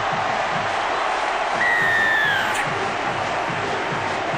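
Large stadium crowd cheering a try, with one falling whistle cutting through about halfway.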